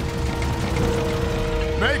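Cartoon soundtrack: background music holding a steady note over a low, steady rumble, with a shouted voice breaking in near the end.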